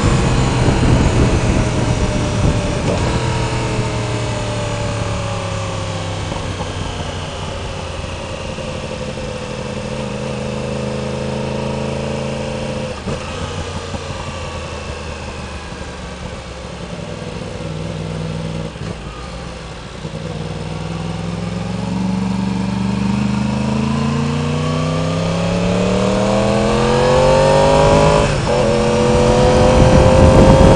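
2016 Yamaha R1's crossplane inline-four engine, heard from the rider's position. Its pitch falls steadily for about twenty seconds as the bike slows, then rises over the last ten seconds as it accelerates, with a brief break near the end.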